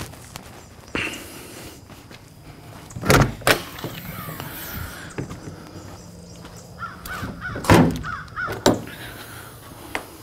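Aluminium enclosed trailer doors being unlatched and swung open, with sharp knocks about a second in and a pair of louder thunks around three seconds in. Crows caw repeatedly through the second half.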